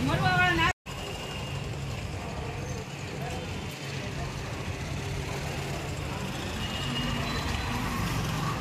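Street traffic noise, a steady hum of passing vehicles. It is preceded by a brief voice that cuts off abruptly under a second in.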